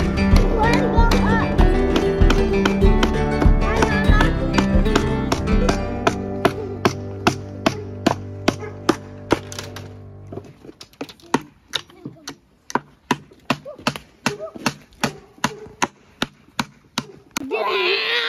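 Background music fading out and stopping about halfway through, followed by a small hammer tapping steadily, about two to three sharp blows a second.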